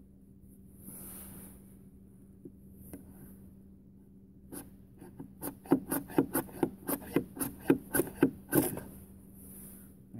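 The square 90-degree spine of an O1 tool steel survival knife scraping down a large ferrocerium rod, striking sparks into maya dust tinder. It goes in a quick run of about a dozen strokes, roughly four a second, starting about halfway in.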